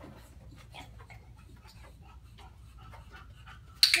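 A bulldog panting, a run of short quick breaths, as she moves about. A sudden loud sound cuts in near the end.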